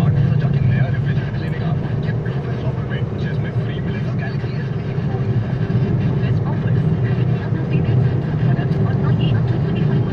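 A car being driven along a road, its engine and road noise heard inside the cabin as a steady low drone.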